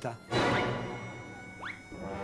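Background music with an added sound effect: a sudden hit just after the start that fades away over about a second, then a short rising glide near the end.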